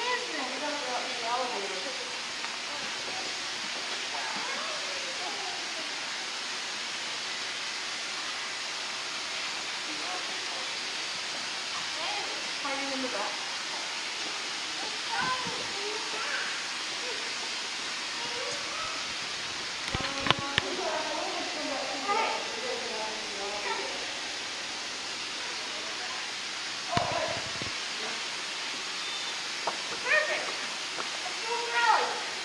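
Indistinct voices of people talking now and then over a steady hiss of background noise, with a few brief thumps about two-thirds of the way in and again near the end.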